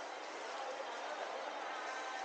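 Steady background ambience of an indoor shopping mall atrium: an even wash of distant voices and hubbub with no distinct event.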